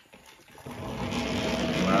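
Small electric motor and gears of a battery-powered Kana toy train (Thomas & Friends) running after being switched on, a steady whirring hum that starts about half a second in and grows gradually louder.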